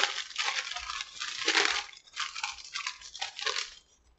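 Paper food wrapper crinkling and rustling as a taco is unwrapped by hand, in uneven rustles that are loudest about a second and a half in, with a short break around two seconds.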